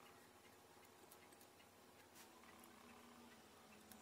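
Near silence, with a few faint, scattered clicks of resistor leads tapping against a printed circuit board as the resistors are fitted into its holes.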